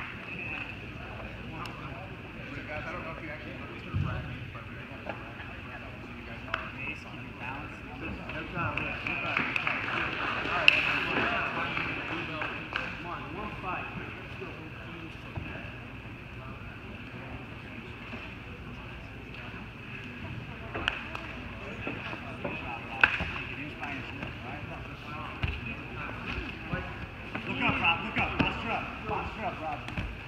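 Indistinct voices murmuring over steady background noise in a large sports hall, with a few sharp knocks; the loudest come about eleven and twenty-three seconds in.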